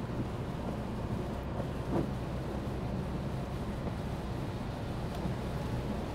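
Steady road and engine noise inside a Peugeot's cabin at motorway cruising speed, with tyres running on a wet road: an even rush over a low hum.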